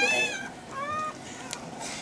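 Rottweiler puppy whining: a thin, high-pitched cry that fades out in the first half second, then a short, fainter whimper about a second in. A faint click comes near the end.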